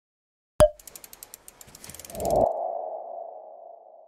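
Logo sting sound effect: a sharp hit about half a second in, a quick run of ticks, then a tone that swells at about two seconds and rings on, slowly fading.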